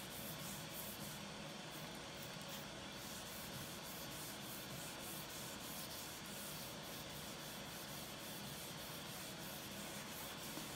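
Wet sandpaper rubbed back and forth by hand over the soapy, wet finish of a wooden half-hull model: a soft, steady rubbing hiss with faint stroke-by-stroke pulses. The finish is being wet-sanded smooth ahead of priming.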